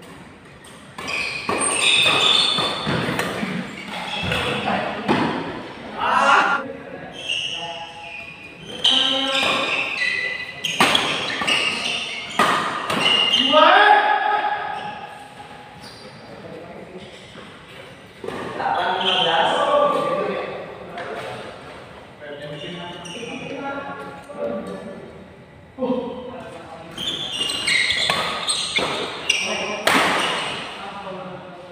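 Badminton doubles rallies: repeated sharp racket hits on the shuttlecock and shoes squeaking on the court floor, ringing in a large hall, with voices calling.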